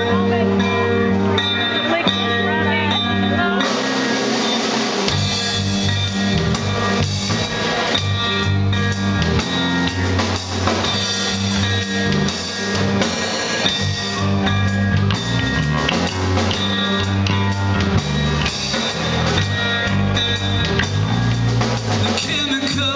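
Live rock trio of electric bass, drum kit and electric guitar playing an instrumental intro. Held bass and guitar notes open it, the low end drops out briefly around four seconds in, and then the drums come in and the full band plays on with a steady beat.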